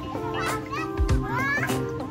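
Background music with children's excited voices and calls over it.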